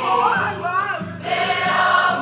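A large choir of male voices sings a Samoan song in harmony. Over the first second a voice glides up and down in pitch, and about a second in the full chorus swells back in.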